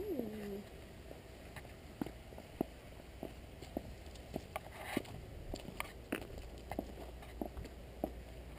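Footsteps walking at an even pace on a garden path, about two steps a second. A short pitched sound that rises and then falls is heard at the very start.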